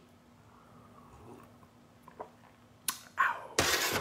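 A pause in a man's talk: quiet room tone with a faint steady hum, a short mouth noise about three seconds in, then a sharp intake of breath near the end.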